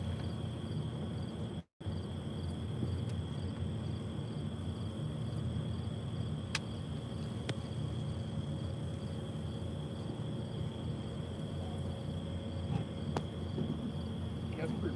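Night insects chirping in an even, steady pulse with a constant high drone, over a low steady rumble. Two faint clicks come midway, and the sound drops out for an instant about two seconds in.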